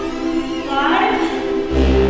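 Music: a sustained, choir-like chord with a gliding vocal sound about a second in, and a deep bass note coming in near the end.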